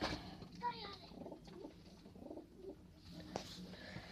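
Domestic pigeons cooing faintly, with a single sharp click a little after three seconds in.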